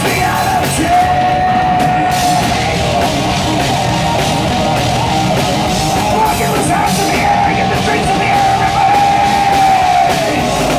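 Live heavy rock band playing loud: distorted guitar, bass and drums, with a long held note about a second in and again over the last few seconds.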